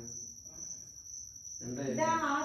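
A short pause between voices, filled by a steady high-pitched whine or chirr that does not change. A voice trails off at the start and another begins near the end.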